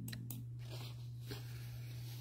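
A steady low hum, with a few faint clicks near the start and about a second in.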